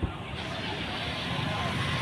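Steady road-traffic noise, growing slightly louder.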